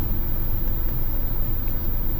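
Steady low rumble inside the cabin of a 2016 Audi Q3 with the engine idling.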